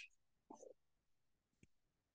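Near silence, broken by a faint brief sound about half a second in and a single faint click about a second and a half in.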